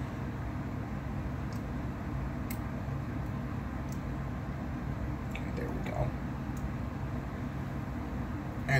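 Small handling sounds from a glass tincture dropper bottle: a few faint clicks and taps over a steady low room hum.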